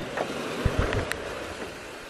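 Lexus LX470 SUV crawling slowly over a rocky dirt trail, heard as a steady rumble and hiss, with low thumps of wind buffeting the microphone.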